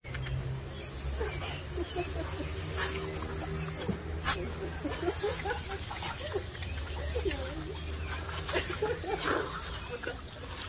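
A man groaning and gasping in pain from OC pepper spray in his eyes, while a garden-hose spray nozzle hisses water onto his face to rinse it out.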